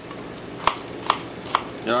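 Chef's knife dicing Yukon Gold potatoes on a plastic cutting board: four sharp strikes of the blade on the board, about two a second.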